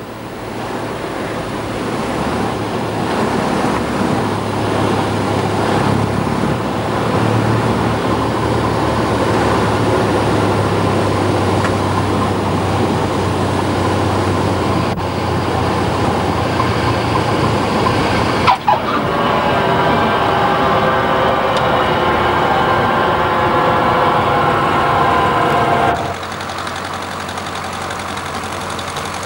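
Single-engine light aircraft heard from inside its cabin during approach and landing: a steady engine-and-airflow noise with a low hum. A sudden break comes about two-thirds of the way through, after which a higher steady tone joins in. Near the end the whole sound drops in level.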